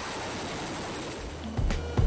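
CH-47 Chinook helicopter's rotors making a steady rushing noise. About a second and a half in, electronic music with heavy low beats comes in.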